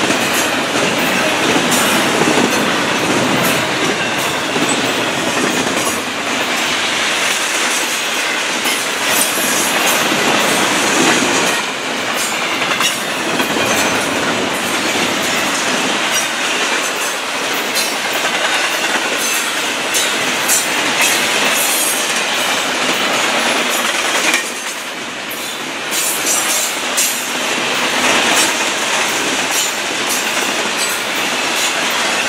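Double-stack container freight cars rolling past close by: a steady, loud rumble and rattle of steel wheels on the rail, with rapid clicking as the wheels cross rail joints. The noise drops briefly about twenty-five seconds in.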